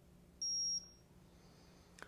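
A blood glucose meter gives a single short, high-pitched beep about half a second in, signalling that the fingerstick test is done and the blood sugar reading is on the display.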